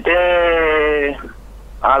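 A person's voice drawing out one long vowel for about a second, then speaking again near the end.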